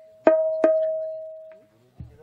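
A musical instrument struck twice on the same ringing note, the strikes less than half a second apart; the note fades away slowly and dies out near the end.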